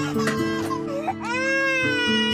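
A six-month-old baby crying: one long wail that rises, holds and then falls, starting about a second in. Background music with held notes runs underneath.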